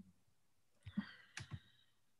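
Near silence broken by about four faint, short clicks in the second half, over a video-call line.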